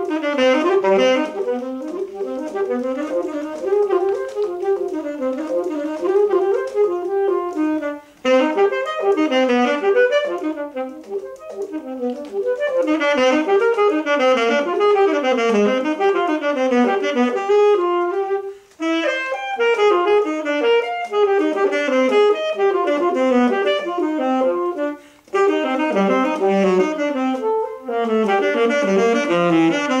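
Saxophone playing fast, continuous runs of notes with piano accompaniment, with three short breaks for breath.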